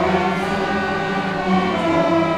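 Student string orchestra of violins and cellos playing long sustained chords, with a change of chord about one and a half seconds in.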